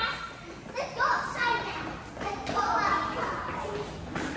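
Children's voices: kids calling out and talking in a few short phrases while playing.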